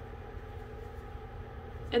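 Steady low background hum with faint, even tones above it and no sudden sounds.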